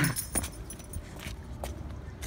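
A lanyard swinging from a hand, jingling faintly, with a few light clicks.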